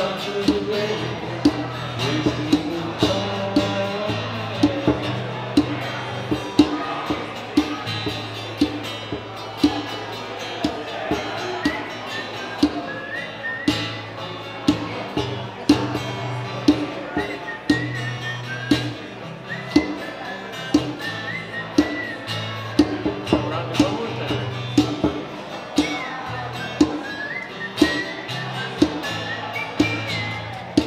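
Acoustic guitar strumming with a djembe keeping a steady beat of sharp hand strikes.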